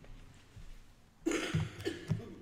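A person coughing: faint room tone, then a loud cough a little past the middle, followed by two or three shorter coughs.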